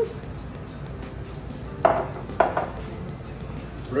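Two glass soda bottles set down on a hard tabletop one after the other: two sharp clinks about half a second apart, followed by a faint high ping.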